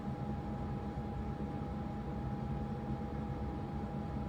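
Cooler Master MasterAir G100M CPU air cooler's fan running with a steady buzzing noise and a thin, steady high whine over it, a noise loud enough that the owner calls it too loud.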